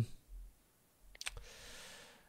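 Faint: a few quick sharp clicks about a second in, followed by a soft breath on the microphone.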